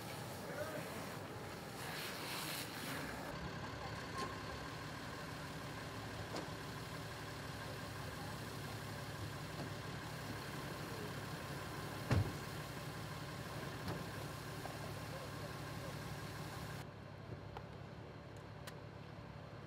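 Fire engine's diesel engine and pump running steadily under the hiss of a high-pressure hose stream, with one sharp knock about twelve seconds in. The hiss falls away near the end.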